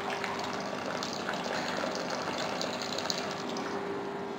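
Aquarium water running out of a tube fed by a submersible suction pump and splashing steadily into the tank below.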